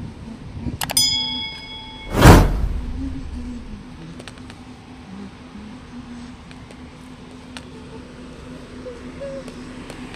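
Subscribe-button animation sound effect: a mouse click, then a bell ding ringing for about a second, then a loud whoosh a little after two seconds in. After that, steady outdoor background with a low hum.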